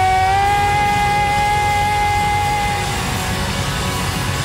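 Live worship band sustaining a chord on keyboards and electric guitar while a woman's voice holds one long high note, which fades out about three seconds in.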